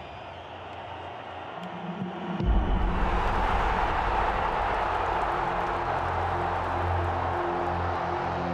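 Background music that swells with a deep bass about two and a half seconds in, under a stadium crowd cheering as the shootout is won.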